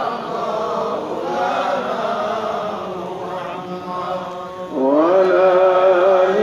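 Unaccompanied devotional chanting in long, held, sliding notes. It grows quieter through the middle, then swells again with a rising note about five seconds in.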